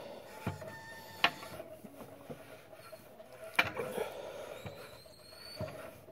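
Homemade grip exerciser made of iron-pipe handles on a 140-pound garage door spring, being worked by hand: two sharp clicks about two seconds apart, with faint squeaks in between.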